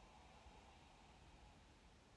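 Near silence: a deliberate pause in the soundtrack, only faint hiss.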